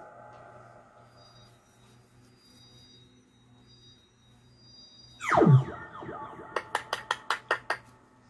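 Synthesizer music: faint held tones fade out, then about five seconds in a loud sweep falls steeply in pitch. A quick run of about eight sharp claps follows near the end.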